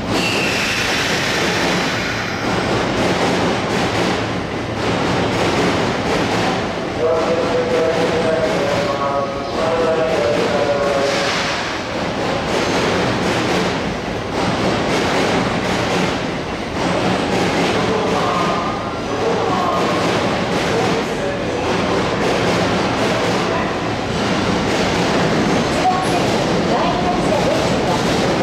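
Sotetsu electric commuter train running into the station over the pointwork, its wheels sounding on the rails as it draws near, over a continuous station background.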